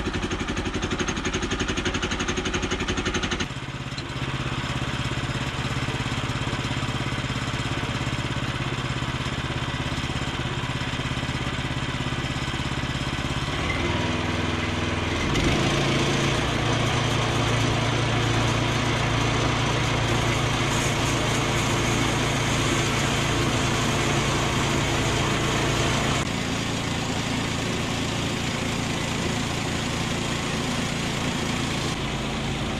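Small gasoline engine of a Woodland Mills HM122 portable bandsaw mill running steadily after starting. About fifteen seconds in the sound grows louder and fuller as the band blade works its way into the log for the first cut.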